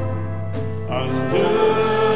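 Church choir singing a slow hymn in long held notes, moving to a new chord about a second in.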